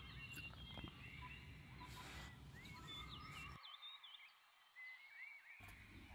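Faint outdoor ambience of small birds chirping: many short, quick calls and whistles that sweep up and down, over a low background rumble that drops away for about two seconds near the end.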